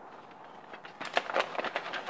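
Folded paper rustling and crackling as it is pulled out of a cardboard shipping box. The crackles start about a second in and come in irregular bursts.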